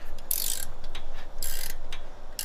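Socket ratchet wrench clicking as it tightens the spring-tension screw on a weight distribution hitch, in two quick bursts of clicks about a second apart.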